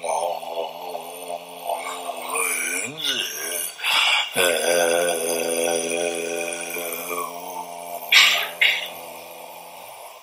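A deep male voice chanting Tibetan Buddhist prayers slowly, holding long drawn-out notes at a steady pitch with short breaks between them, followed by two brief breathy bursts near the end.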